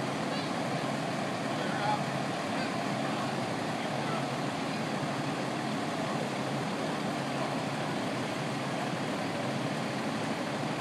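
Fire engines running at idle, a steady low hum, with faint voices in the background.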